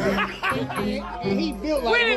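Several voices on a street hooting and calling out in short yelps that rise and fall in pitch, with music underneath.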